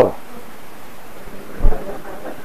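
A short pause in speech filled with steady room hiss, broken about one and a half seconds in by a single low thump, which matches hands coming down on a lectern.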